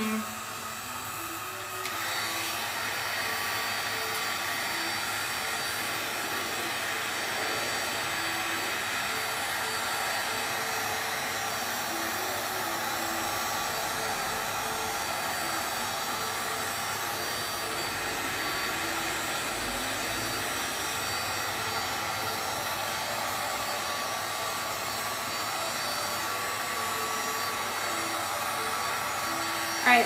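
Handheld electric heat gun running steadily, its fan blowing hot air over encaustic beeswax paint to melt and smooth it. The steady whirring hiss gets a little louder about two seconds in.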